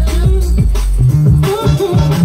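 Drum and bass DJ set playing loud over the sound system: deep, held bass notes under drum hits, with short sliding-pitch sounds on top.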